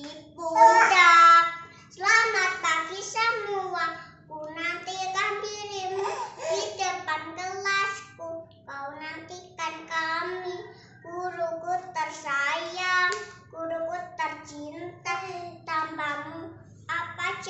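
A young child singing alone without accompaniment, phrase after phrase with short breaths between.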